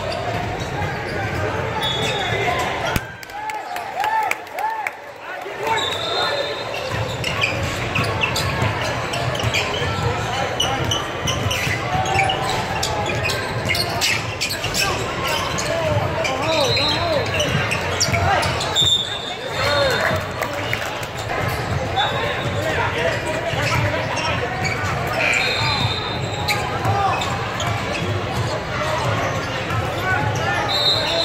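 Basketballs bouncing on a hardwood gym floor amid a steady babble of many voices, echoing in a large hall. Brief high squeaks come every few seconds.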